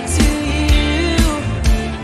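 Live worship band playing an upbeat song: voices singing over acoustic and electric guitars, with a steady beat of about two strikes a second.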